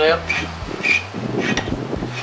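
A few short scraping strokes of a hand file on a Teflon strip, over a steady low hum.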